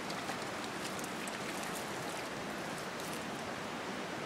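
Steady rushing of the McCloud River's flowing water, with a scattering of faint, short high ticks through the middle.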